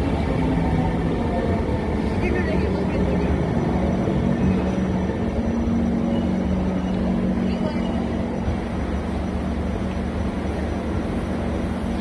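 SMRT MRT train pulling out of the platform and accelerating away: a steady motor hum, stepping up slightly in pitch about two seconds in, over the rumble of the wheels on the rails. Voices can be heard behind it.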